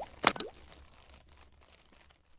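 Cartoonish sound effects from an animated logo intro: a few sharp pops with short upward pitch glides in the first half second, then a faint tail that fades out.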